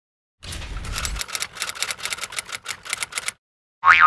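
Typewriter keystroke sound effect: a quick, even run of key clicks, about six or seven a second, lasting about three seconds. Just before the end, a loud wobbling boing sound effect begins.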